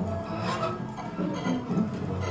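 Free-improvised ensemble music from cello, hand percussion and guitar, played as a scratchy, rasping texture of scraped and rubbed sounds with brief pitched fragments and no steady beat.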